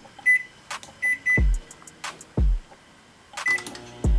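Microwave oven keypad beeping as its buttons are pressed: four short, high, single-pitched beeps, one about a quarter second in, two in quick succession around a second in, and one near the end. Background music with deep bass-drum hits plays under them.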